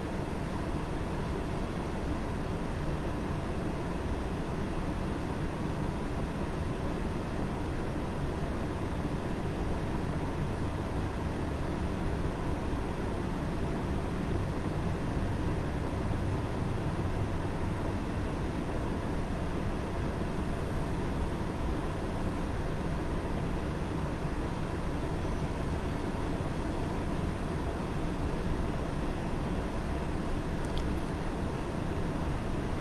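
Steady low background rumble and hiss with a faint constant hum, unchanging throughout and with no distinct events.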